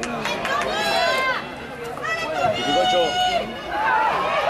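Several voices shouting and calling at an outdoor football match, high-pitched cries that rise and fall, with one longer held shout about two and a half seconds in.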